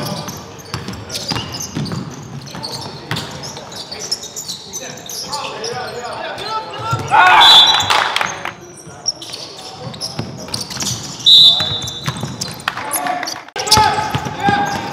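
Basketball game sounds on a hardwood gym floor: a ball bouncing and players' voices echoing in the hall. Two loud, short, shrill high-pitched sounds cut through, about seven and eleven seconds in.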